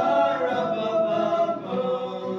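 A small group of young men singing a Christmas song together as a choir, holding long sung notes.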